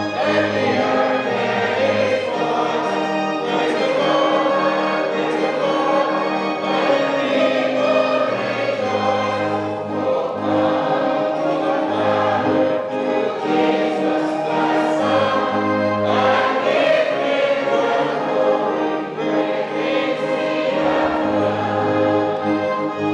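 A hymn sung by many voices over a steady, sustained instrumental accompaniment with held bass notes.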